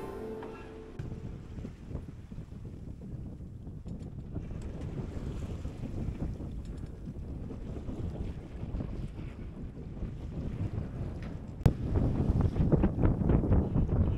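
Wind buffeting the microphone and sea water rushing past the hull aboard a moving sailing yacht, a steady rumbling noise. A single sharp knock comes near the end, after which the wind noise grows louder.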